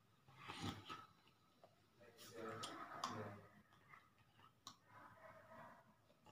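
Faint mouth and breath noises from a person signing, with a few sharp clicks and a brief low voice sound in the middle.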